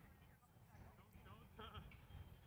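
Near silence with faint distant voices calling out across the field, a louder wavering call near the end.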